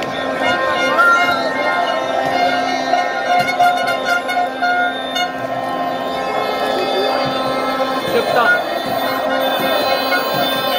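Street crowd of celebrating football fans shouting and cheering, with many horns blowing steady, droning notes at several pitches over the din.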